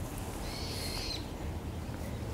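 A bird's single high, thin whistled call, under a second long, about half a second in, over quiet outdoor background.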